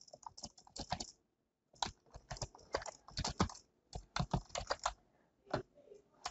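Typing on a computer keyboard: a short run of key clicks, a brief pause about a second in, then a longer run of clicks that stops about five seconds in.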